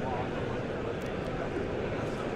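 Background chatter of many people over the steady noise of a large exhibition hall, with no single voice or event standing out.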